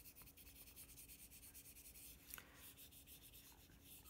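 Very faint, light rubbing of a pencil-top rubber eraser on drawing paper, barely pressed, under a faint steady hum; close to silence.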